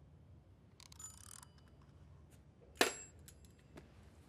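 A small plastic pill bottle being handled: a brief rattle about a second in, then one sharp click near three seconds as its cap is snapped open, followed by a few faint clicks, over a low room hum.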